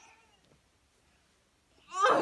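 A drawn-out voice tail with a falling pitch fades out in the first half second. Then there is near silence, just room tone, until speech starts again at the very end.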